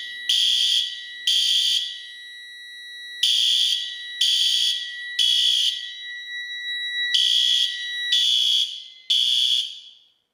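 System Sensor SpectrAlert Advance fire alarm horns sounding the temporal-3 evacuation pattern: three short blasts, a pause, three more, a pause, and three more. They then cut off as the alarm is silenced. A steady high tone runs beneath the first two groups and stops during the third.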